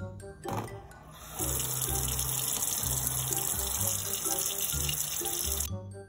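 Hot water running hard from a kitchen tap into a stainless steel sink, pouring over a packaged frozen tuna collar to thaw it. It starts about a second in and shuts off shortly before the end.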